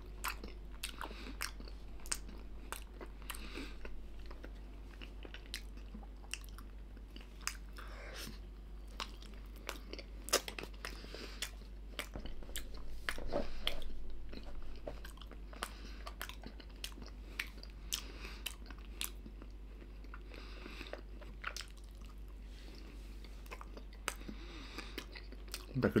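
A person chewing a soft meat-and-barley-filled pastry pocket close to the microphone: a long run of wet clicks and smacks from the mouth, with a louder stretch about halfway through.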